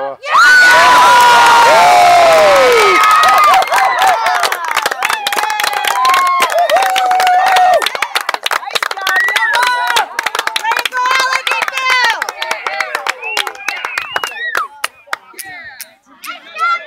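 Sideline spectators cheering loudly for a goal, many voices shouting and screaming at once, then clapping with more cheers that thin out over the last few seconds.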